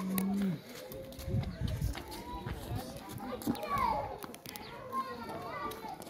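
Children playing and chattering, with scattered voices of other people in the background.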